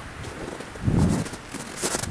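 A single soft, low thud about halfway through over a faint steady outdoor hiss, with a few faint crackles near the end.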